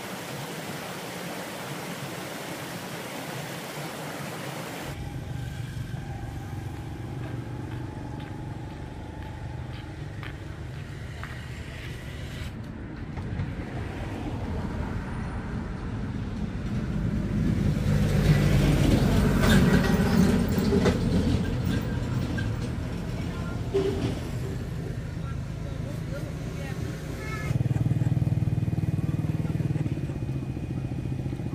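A stream running over rocks, then road traffic. A vehicle passes close by, loudest about two-thirds of the way in, and near the end a nearby motorbike-type engine starts running low and steady.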